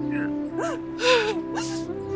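A woman sobbing: three gasping, whimpering sobs about half a second apart, over sustained background music.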